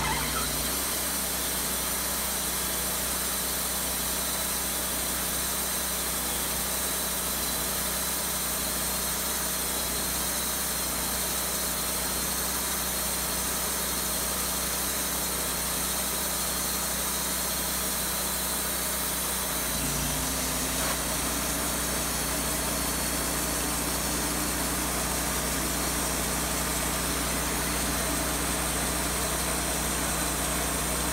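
Wood-Mizer LT40Wide portable band sawmill running steadily at working speed, its engine and band blade going without a break. About twenty seconds in the note shifts as the blade begins cutting into the oak log.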